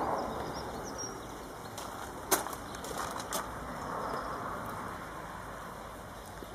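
Low, even background noise, strongest at the start and easing off, with a few light clicks and a faint brief high chirp about a second in.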